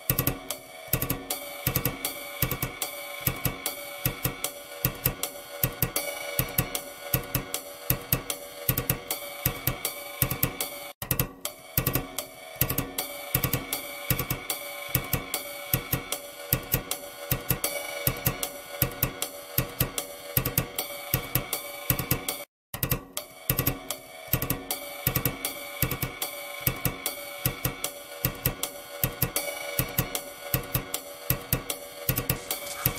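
Background music with a steady drum-kit beat, with cymbals and hi-hat, over sustained held tones. It cuts out briefly twice, near the middle and about three quarters of the way through.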